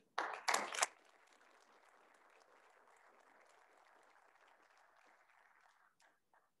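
Applause from a small audience, faint and steady, ending abruptly about six seconds in, with a short, louder burst of sharp sounds close by in the first second.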